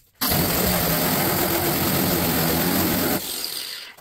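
Power sander run against the sheet-metal fender for about three seconds, then let go and spinning down near the end. It is knocking back the black marker guide coat so that the high spots in the dented panel show up.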